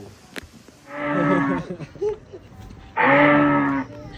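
A man's voice making two long, drawn-out calls of steady pitch, each just under a second, about two seconds apart.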